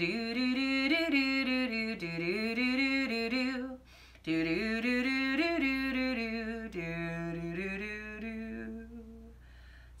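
A woman singing a slow, wordless melody on 'do', in two long phrases with a short breath between them about four seconds in, trailing off near the end.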